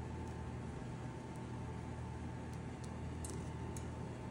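Steady low hum with a faint steady tone above it, and a few faint short ticks in the second half.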